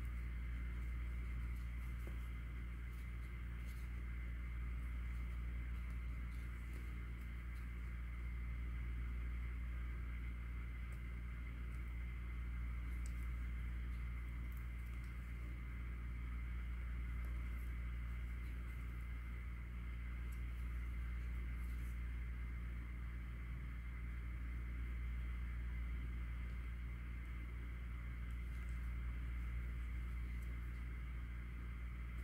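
Steady low background hum with a thin, faint high whine, unchanging throughout, with a few faint scattered ticks.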